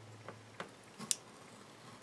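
A few faint ticks and scrapes of a craft knife blade cutting through glued paper along the seam between photo blocks.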